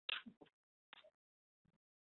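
Near silence, broken by a few faint short clicks in the first half-second and again about a second in.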